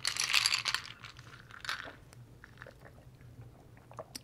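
Ice cubes stirred with a straw in a glass mason jar of iced chai: a short crunching rattle in the first second, then a few faint clinks.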